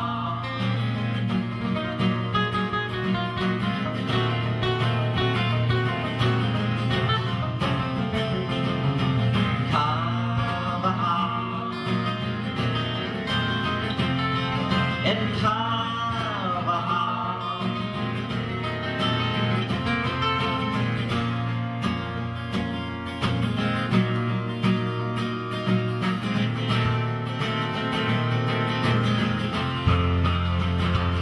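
Two acoustic guitars playing an instrumental break together in a folk-rock song.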